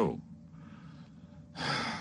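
A man's voice ends a word, then after a pause of about a second and a half he takes an audible breath in through the mouth, about half a second long, near the end.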